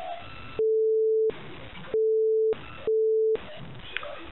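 Three steady single-pitch beeps, each between half a second and just under a second long, with faint telephone-line hiss between them. They are censor bleeps laid over the caller's spoken address.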